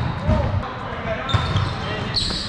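Indoor volleyball game in a large, echoing gym: players' voices in the background, thuds of feet and ball on the hardwood court, and one sharp smack a little past halfway.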